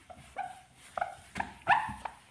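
Dry-erase marker squeaking on a whiteboard in short, separate strokes as figures are written, four squeaks in all, the loudest near the end.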